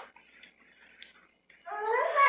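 Room tone, then about a second and a half in a short, high-pitched voiced sound, a brief whine-like call.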